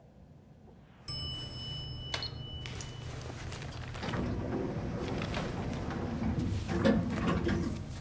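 A lift chime rings about a second in over a low steady hum, then the lift doors slide open. It is followed by a run of knocks and rustling, loudest near the end.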